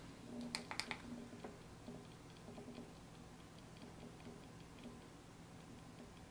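Two faint clicks of a cartridge battery's button about half a second in, then faint rapid ticking and crackling as the vape cartridge heats in preheat mode.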